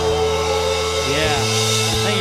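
Live rock band with electric guitar and bass holding a sustained chord, the bass note shifting about a second in, with a voice singing or shouting over it.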